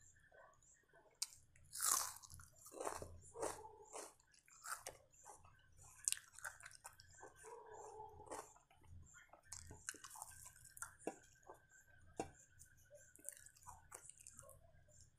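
Close-miked chewing and biting of crisp raw onion: irregular wet crunches and mouth clicks, the loudest crunch about two seconds in.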